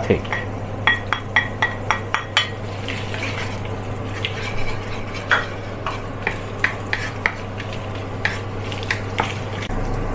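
Wooden spatula stirring and knocking against a nonstick wok as spring onion, garlic and dried chilies fry in oil. There is a quick run of light knocks in the first couple of seconds, then scattered taps and scrapes over a light sizzle and a steady low hum.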